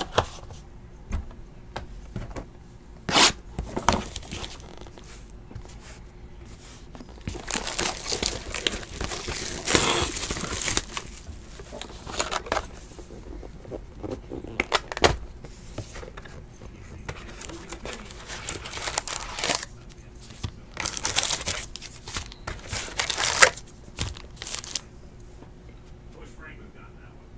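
Plastic shrink wrap torn and crumpled off a cardboard trading-card hobby box, then the box lid opened, in irregular crinkling bursts with a few sharp snaps.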